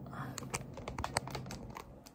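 Light handling clicks and taps as a Lightning-to-USB adapter is plugged into the iPhone doing the recording, heard close up through the phone's own built-in mic. The clicks come in a quick irregular run and die away near the end.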